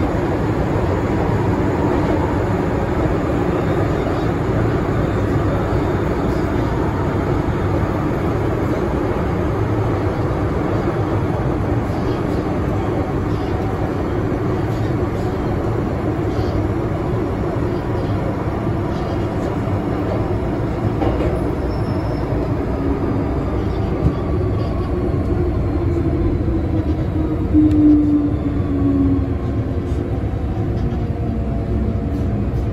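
MTR M-train electric multiple unit running, heard from inside the carriage: a steady rumble of wheels and motors. Over the last ten seconds a thin whine falls in pitch.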